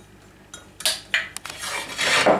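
Metal spoon clinking and scraping against a plastic mixing bowl while stirring cake batter: a few sharp clinks about a second in, then a longer scrape.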